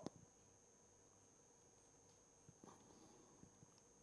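Near silence: room tone, with a few faint soft ticks a little past the middle.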